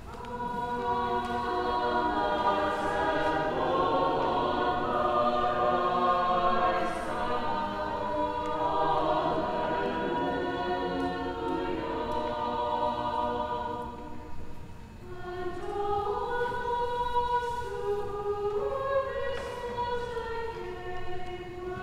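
Choir singing a hymn in long held chords, with a short break about fifteen seconds in before the next phrase begins.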